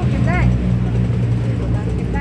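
A steady low motor hum, with a woman's voice speaking briefly near the start.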